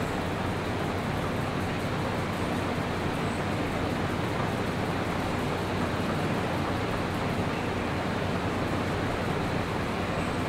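Steady, unchanging hiss with a low hum underneath, like a fan or air conditioner running; no separate knocks or movement sounds stand out.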